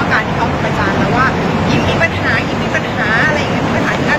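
A woman speaking Thai to reporters, over steady traffic noise.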